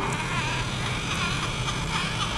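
A battery-powered toy car's small electric motor and gears buzz steadily as it drives slowly along a tabletop.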